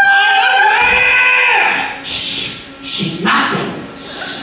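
A long wolf howl from the Wolfman character: it climbs in pitch, holds high, and falls away after about a second and a half. Shorter, noisier sounds follow in the second half.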